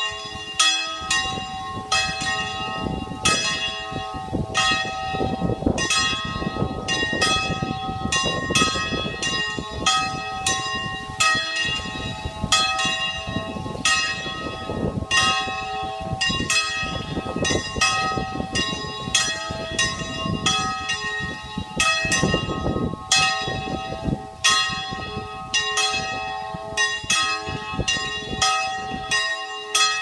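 Two church bells swung full-circle in the Ambrosian manner (a 'distesa'), striking again and again at an uneven pace of about one stroke a second or a little faster, each stroke left ringing under the next. This is the peal for festive noon.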